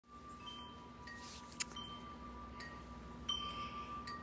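Wind chimes ringing faintly, a few light strikes at irregular intervals, with one sharp click about one and a half seconds in.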